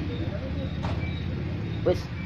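Steady low mechanical hum, even in level, under two short spoken words.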